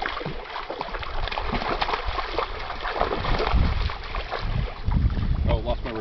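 Wind gusting on the microphone in repeated low rumbles, over water splashing as a fish is brought into a landing net in shallow water.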